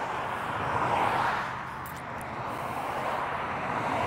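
Cars passing on a multi-lane road, a steady hiss of tyres and engines that swells as a car goes by about a second in, eases off, then builds again as more cars approach.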